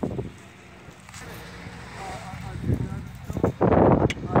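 Faint voices of people talking at a distance, then a loud burst of rustling noise in the last half second.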